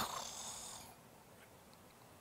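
A man's breathy exhale into a close handheld microphone, fading out within the first second, followed by faint room tone.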